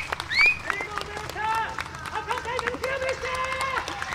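Audience clapping, with a few short shouted calls and voices over it.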